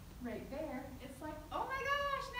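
A woman speaking, her voice rising near the end into one long, high, drawn-out syllable.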